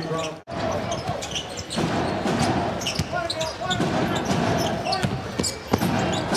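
Basketball bouncing on a hardwood court during play in an arena, with scattered knocks over a steady background of arena voices. The sound starts abruptly about half a second in, after a sharp edit cut.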